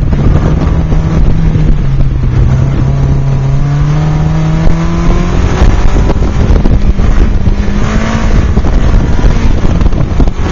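Toyota MR2 Spyder's 1.8-litre four-cylinder engine working hard through an autocross run, its note dipping about two seconds in and then climbing steadily for several seconds. Heavy wind buffeting on the microphone in the open cockpit runs under it.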